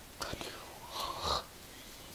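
A person whispering close to the microphone, in two short bursts.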